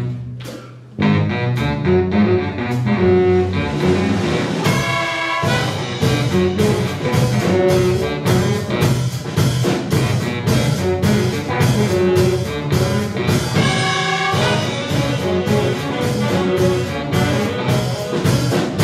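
Live funk band playing an instrumental with drum kit, bass, electric guitar, keyboard and a horn section of saxophones and trombone. The band drops out briefly about a second in, then comes back in on a steady drum beat. Sustained chords ring out around five seconds in and again near fourteen seconds.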